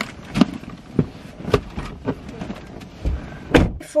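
Knocks and bumps of a handbag being swung about and set down inside a car's cabin: several separate knocks, with the loudest thump about three and a half seconds in.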